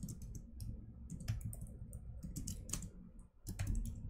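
Typing on a computer keyboard: quick, irregular keystrokes, with a brief pause a little past three seconds in before the keys start again.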